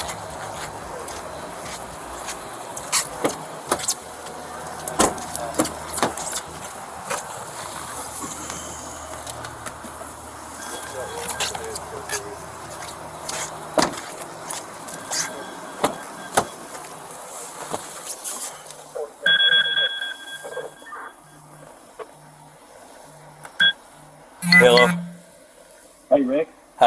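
Body-worn camera rubbing and knocking against clothing with footsteps over a steady background hum. Later, with the camera at a patrol car, a high steady beep sounds for about a second and a half, and a low pulse repeats about every half second, ending in a short louder burst.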